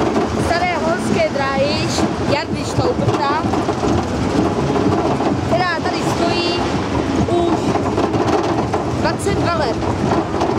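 Steel roller coaster train climbing the lift hill, a steady noise of the cars running on the track. Riders' excited voices break in over it a few times.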